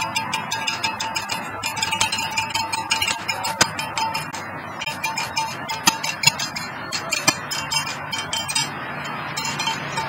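Rapid, irregular metallic jingling and clinking, with a faint steady high tone underneath that fades out near the end.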